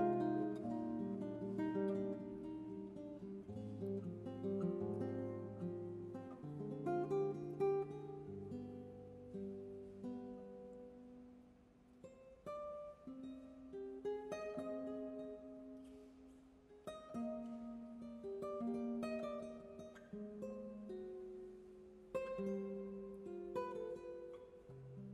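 Nylon-string classical guitar playing an instrumental interlude: slow plucked arpeggios over low bass notes, with a softer stretch about halfway through.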